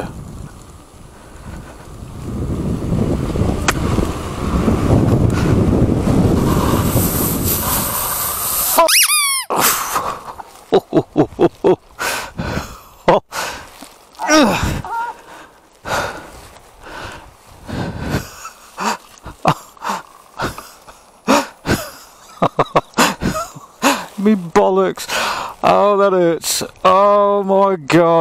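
Hard braking on an e-bike: the tyre skids on a loose gravel path in a rough rushing scrape that builds over several seconds and stops abruptly about nine seconds in. Then come irregular knocks and rattles as the bike bumps over rough ground, and near the end a man's breathless voice sounds without words.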